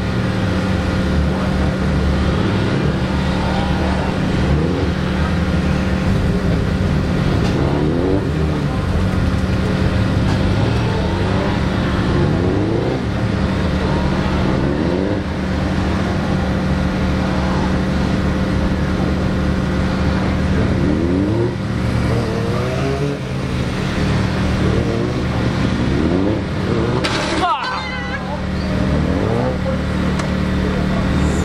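Suzuki GSX1300R Hayabusa inline-four engine revving up again and again as it accelerates out of tight turns and backs off between them, with other motorcycles running steadily underneath. About three seconds before the end there is a sudden harsh high-pitched noise and a brief dip as the bike goes down on its side.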